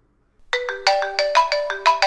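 Mobile phone ringtone starting about half a second in: a quick melody of short chiming notes. It is the incoming call that the exchange's masked-calling system places to the user's registered number after the call button is pressed.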